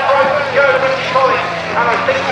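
Race commentary over the circuit loudspeakers. A distant race truck's engine comes in as a steady low drone near the end.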